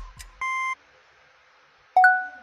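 Electronic quiz-filter countdown: a few last quick ticks, then a short steady high beep about half a second in marking time up, followed by near silence.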